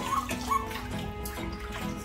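Background music over water splashing in a plastic tub as a Shih Tzu puppy is washed by hand.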